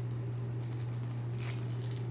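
A steady low hum with faint rustling, and a few soft clicks about one and a half seconds in.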